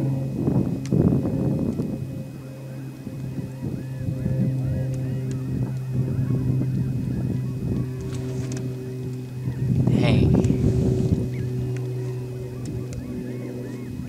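Geese honking in the distance over a steady low hum, with a louder rush of noise about ten seconds in.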